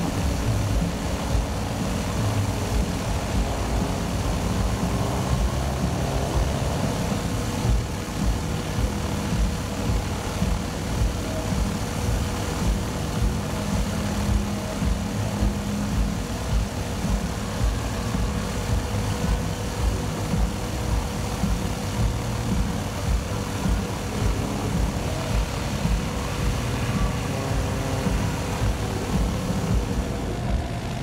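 Aerolite 103 ultralight's engine idling steadily on the ground, with background music laid over it.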